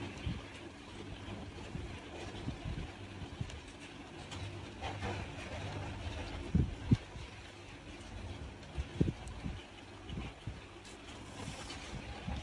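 Handling noise from crocheting with a metal hook and yarn: a steady low rumble with a few soft knocks, as hands and hook bump against the work surface.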